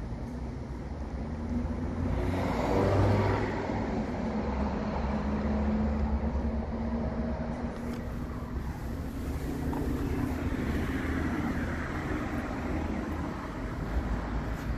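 Motor vehicle engine running nearby amid traffic noise: a steady low rumble with engine tones, swelling louder about two to three seconds in.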